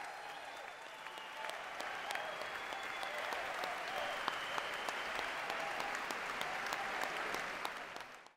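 Audience applauding in a concert hall: a dense, sustained clapping with individual claps standing out, growing a little louder about halfway through.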